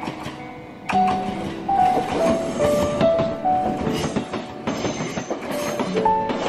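A short electric train passing close by over a level crossing. Its rattling noise starts suddenly about a second in and goes on to the end, under gentle piano background music.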